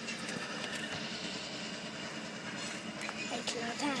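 Distant CN GP38-2W diesel switcher locomotive running steadily as it moves a cut of freight cars through the yard, heard as a faint steady drone under open-air noise. A voice comes in near the end.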